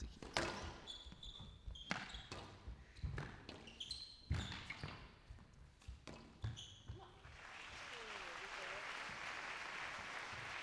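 Squash rally: the ball cracking off rackets and the walls, shoes squeaking on the court floor and the players breathing hard with the effort. About seven seconds in the rally ends and the crowd applauds.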